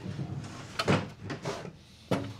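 Wooden drawers being slid out of an old painted wooden table, with a sharp wooden knock a little under a second in and a few lighter knocks after it.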